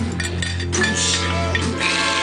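Background music playing, with a quick run of clinks from a metal fork and glassware against a china plate in the first second.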